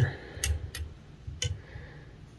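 Three light clicks with faint handling rumble as the black ribbing wire is picked up and pulled into place at a fly-tying vise.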